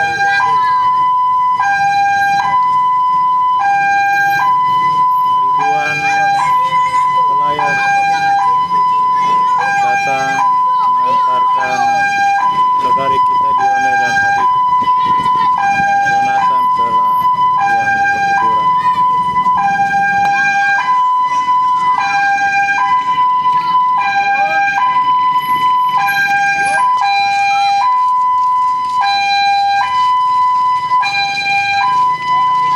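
Two-tone hi-lo siren alternating steadily between two pitches throughout, with voices of a crowd walking along underneath.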